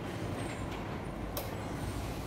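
Children's push-handle tricycle rolling over a stone-tiled floor: a steady low rumble from its wheels, with a single sharp click about one and a half seconds in.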